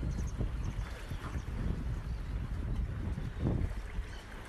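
Wind buffeting a phone's microphone, a gusty low rumble that rises and falls unevenly.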